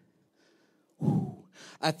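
A man sighing into a handheld microphone: one short, breathy exhale about a second in, close on the mic, followed near the end by the first word of his speech.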